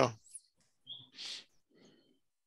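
A man's voice trails off at the start, then the video-call audio goes nearly silent, broken only by a tiny high blip about a second in and a short faint hiss just after it.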